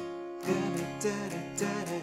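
Acoustic guitar with a capo on the first fret being strummed on a C chord shape in a steady down-and-up pattern, about four strokes a second.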